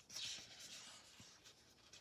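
Faint paper rubbing: a soft scratch lasting about half a second near the start, then near silence, as planner paper or a sticker sheet is handled.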